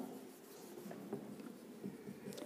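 Faint scratching and light ticking of a marker pen writing on a board.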